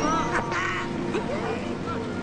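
A few short animal-like vocal calls that bend up and down in pitch, mostly in the first second with a couple of lower ones about halfway through, over soft background music.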